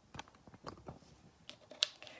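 Scattered light clicks and taps of cardstock pieces being handled and pressed onto a card, the sharpest click near the end.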